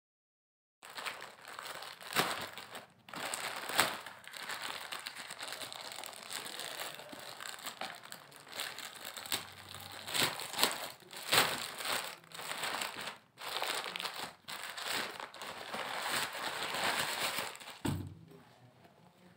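Plastic packaging (a courier mailer and plastic bags) crinkling and rustling as it is handled and unwrapped by hand, starting about a second in and running on irregularly with many sharp crackles.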